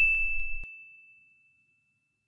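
A bright, bell-like cartoon 'ding' sound effect. A single struck tone rings out and fades away over about a second and a half.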